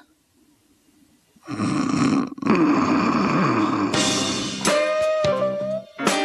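Short guitar interlude in a loose blues style. It starts after about a second and a half of near silence with a strummed stretch, then moves to picked notes and a held note.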